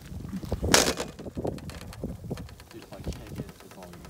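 Ice glaze on a metal parking sign cracking: one sharp crack about a second in, then a run of small crackles and ticks as the ice breaks up.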